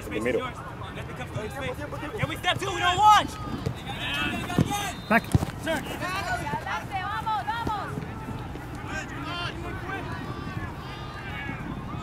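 Scattered shouts and calls from players and spectators at an outdoor soccer match, unclear as words, with a couple of sharp knocks about five seconds in.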